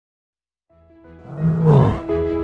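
An animal roar sound effect, a bear's, swelling in from silence about a third of the way in over rising music, loudest near the end and falling in pitch as it trails off.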